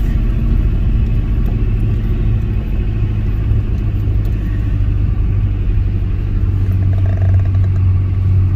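Steady low rumble of a car driving slowly on a paved road, heard from inside the cabin: engine and tyre noise with no change in speed.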